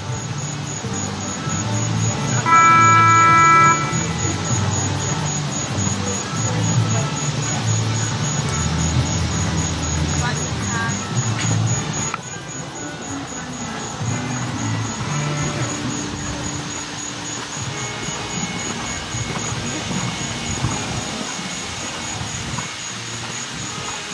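A single horn blast, one steady tone held for about a second, a couple of seconds in. It sounds over an open-air background of distant PA voices and a low murmur.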